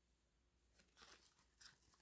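Near silence, with a few faint rustles of a glittery cardstock die-cut being handled about a second in.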